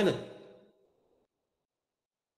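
A man's voice finishing a word and trailing off in the first moments, then dead silence.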